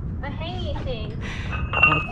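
A woman laughing and voices in conversation, over a low rumble on the microphone; a steady high tone sounds for about a second near the end.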